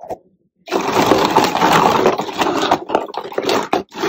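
Dozens of small plastic Bath & Body Works PocketBac hand sanitizer bottles clattering against each other and the floor as they are poured or shuffled. A dense rattle starts about half a second in, lasts about three seconds, and breaks into a few separate clacks near the end.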